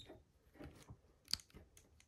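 A few faint clicks from a Hasbro Displacer Beast action figure's plastic head and jaw joints as they are moved by hand, the sharpest a little past halfway.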